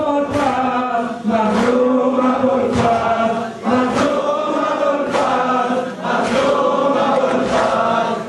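Crowd of men chanting together in unison, with a rhythmic slap about once a second keeping time.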